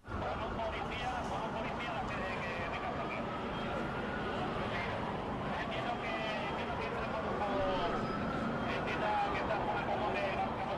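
Emergency-scene street commotion that starts suddenly: an emergency vehicle siren wails, slowly rising and falling in pitch, over people's voices calling and talking over one another and traffic noise.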